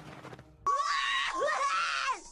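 An animated character screaming: a loud, long scream that starts suddenly about two-thirds of a second in and is held for about a second and a half, wavering in pitch, then stops.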